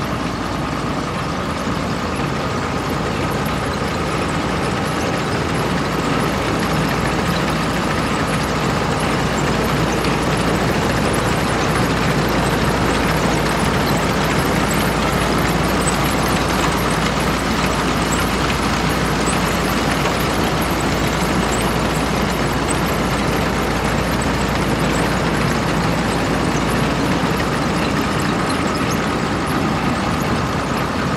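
Steady drone of an engine running, with a thin, steady whine above a low rumble.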